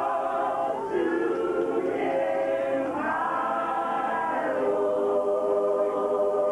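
A cappella gospel choir singing, holding long chords and moving to a new chord every second or so.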